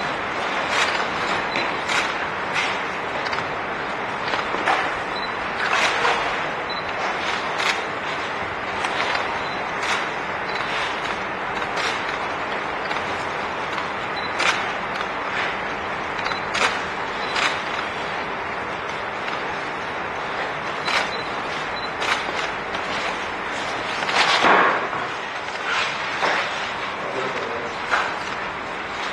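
Sharp clicks at irregular intervals, a few every second or two, over a steady hiss, with one louder click burst near the end.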